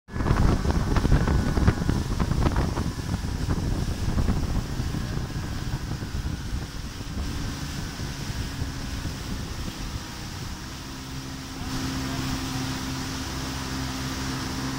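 Evinrude 115 hp outboard motor running steadily at half throttle, driving a 7-metre boat through water that rushes and sprays in the wake. Heavy wind buffets the microphone over the first few seconds. The engine's steady hum comes through more clearly near the end, where it gets a little louder.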